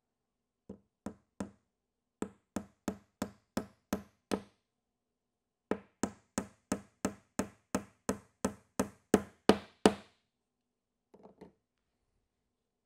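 A hammer driving a 1¼-inch nail through a wooden frame top bar into the end bar. Three light starting taps, then a run of about seven blows at roughly three a second, a short pause, and about ten more blows, loudest near the end as the nail goes home.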